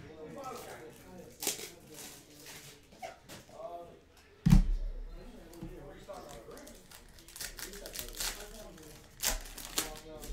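Plastic trading-card pack wrappers crinkling and tearing as packs are handled and opened, with sharp clicks. A heavy thump comes about four and a half seconds in. Low talking runs underneath.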